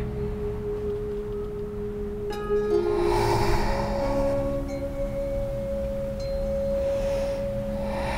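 Slow ambient background music of long, steady held tones, bell-like. A soft, breathy hiss comes in about three seconds in, most likely a deep breath during cat-cow.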